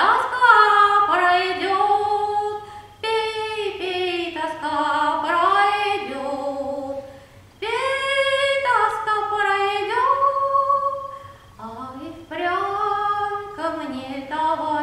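A woman singing a Russian folk song solo and unaccompanied, in long drawn-out phrases with short breaks between them.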